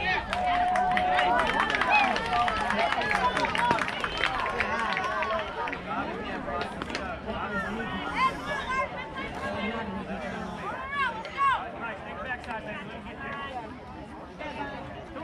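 Many overlapping voices at a youth baseball game, children and adults chattering and calling out at once, with scattered sharp clicks; loudest in the first few seconds and dying down toward the end.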